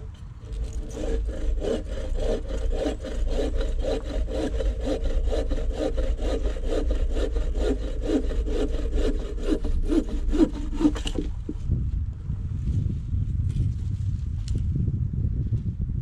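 Bow saw cutting through a green cherry-wood branch: steady back-and-forth strokes, about three a second, that stop about eleven seconds in.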